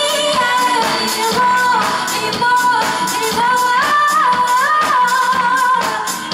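Female lead vocalist singing live with a band, holding long notes that step up and down in pitch over a steady drum beat.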